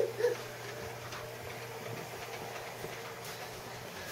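Small battery-powered toy train running on its track, a faint steady motor hum that stops near the end. A turn in the track is too tight for it, in the adults' view.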